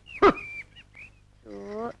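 A brief sharp cry with a falling pitch, followed by a few short, high, chirp-like calls. A short voiced note near the end.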